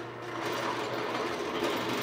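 A steady, fast mechanical whirring from a machine in the background, getting slightly louder.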